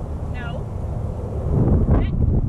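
Wind buffeting an outdoor microphone: a steady low rumble that swells louder near the end.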